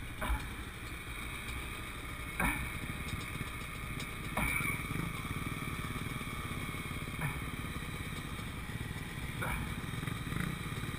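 Dirt bike engine idling steadily, with a few brief clicks over it.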